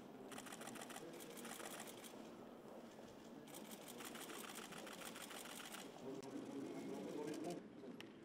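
Camera shutters firing in rapid bursts of fast, even clicking, several bursts with short pauses between them and the last stopping shortly before the end, over a faint murmur of voices.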